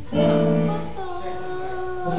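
Live Latin band music in rehearsal: the drums stop and a chord is held with a woman's voice singing over it.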